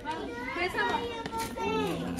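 Children's excited voices talking over one another.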